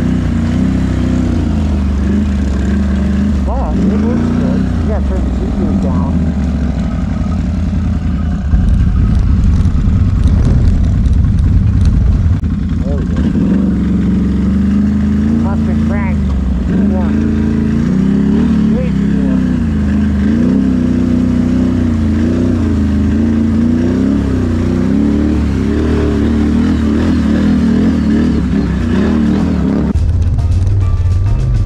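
ATV engine running under way, its pitch rising and falling with the throttle. It runs louder for a few seconds from about eight seconds in.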